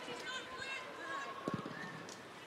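Players' shouts and calls echoing across a sparsely attended football ground, with a single dull thud of a goal kick about one and a half seconds in.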